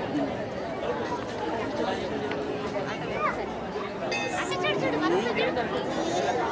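Crowd chatter: many adults and children talking at once. A high voice rises above the babble about three seconds in and again a second later.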